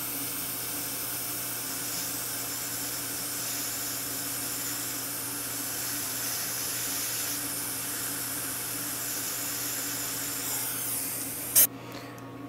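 Dental suction running steadily through the laser work: an even hiss over a low hum. It stops near the end with a short sharp burst.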